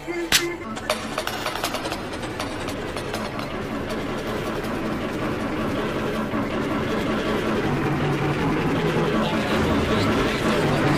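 A dense jumble of many overlapping video soundtracks playing at once, voices and noise layered into one continuous mass, slowly growing louder.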